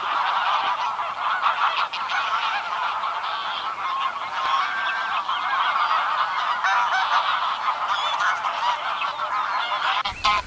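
A flock of greylag geese calling together, many honking calls overlapping without a pause.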